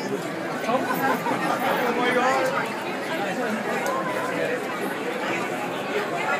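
Crowd chatter: many people talking over one another at once, no single voice clear.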